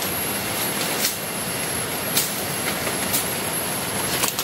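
Steady rushing outdoor noise with a thin, steady high-pitched whine above it and a few faint ticks about once a second.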